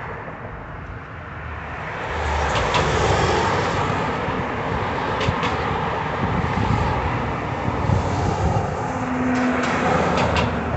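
Road traffic passing: cars and a box truck driving by, with tyre and engine noise that swells about two seconds in and stays steady, a few short clicks, and a brief low hum near the end.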